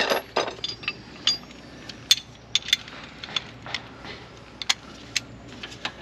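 Hand tool working the rear brake caliper bolts as they are tightened: scattered sharp metallic clicks and clinks, irregularly spaced, one to three a second.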